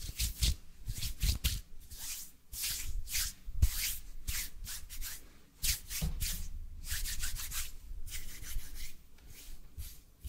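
Bare hands rubbing palm against palm right at a microphone: a run of dry swishing strokes, a few each second, with soft low bumps and a couple of brief lulls.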